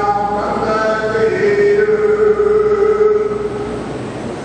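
Sikh devotional chanting in long, held notes, one pitch sustained for several seconds while higher notes shift above it.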